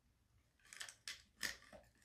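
Bubble tea sucked up through a wide straw, with tapioca pearls drawn up it: a few short, sharp slurps in quick succession starting about midway, the loudest near the end of the run.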